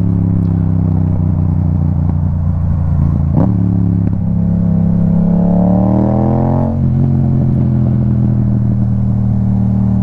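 Yamaha 689 cc parallel-twin motorcycle engine (the R7's engine) running under way, a deep, pretty mean sounding twin. About four seconds in it revs up in a steadily rising pitch, then drops back sharply a few seconds later as the throttle comes off or it shifts, and runs on steadily.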